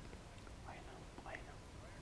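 Faint, indistinct voices of people talking quietly, heard mostly around the middle, over a low steady hum.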